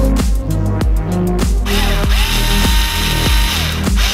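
Electronic music with a heavy, steady beat. A little under two seconds in, a Worx SD cordless screwdriver joins it: it spins up, runs steadily for about two seconds driving a wheel screw into the hub of an RC truck, then winds down just before the end.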